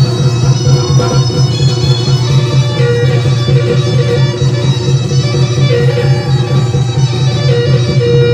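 Loud live band music in a Bihu song: an instrumental passage with a wind-like lead melody over a steady bass, played on keyboard and electric guitar.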